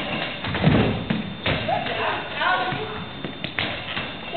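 A goalball thudding on a wooden sports-hall floor: several thuds in the first second and a half and two more near the end, with voices calling out in between.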